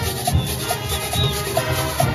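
Junkanoo band music: goatskin drums and cowbells playing a steady beat, with a short high note repeating about twice a second.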